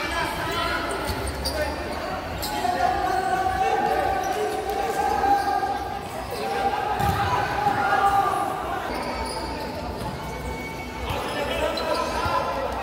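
Futsal ball being kicked and bouncing on a hard indoor court, with sharp knocks ringing in an echoing sports hall. Players' and spectators' voices call and shout over it.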